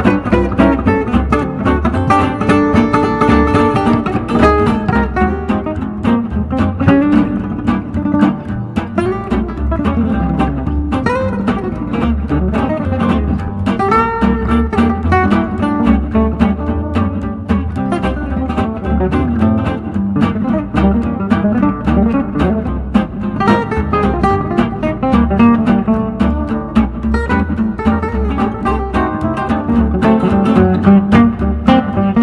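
Gypsy swing (jazz manouche) solo on an f-hole archtop acoustic guitar built around 1950: fast single-note picked lines over a steady, pulsing rhythm-guitar accompaniment played on the same guitar.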